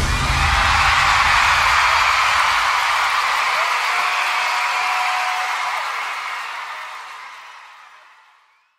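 Arena crowd cheering and screaming at the end of a live pop song, with the low ring of the band's final note dying away over the first couple of seconds. The cheering fades out near the end.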